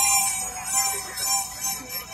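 Symphony orchestra playing live outdoors in a softer passage of sustained notes.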